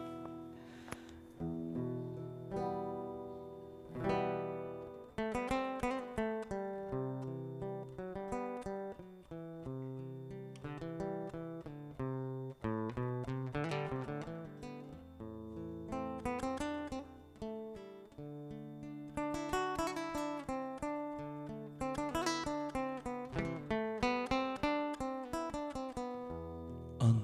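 A cutaway acoustic guitar played solo and live, with picked notes and strummed chords following one another, each ringing out and fading. It is the instrumental introduction to a song, before any singing.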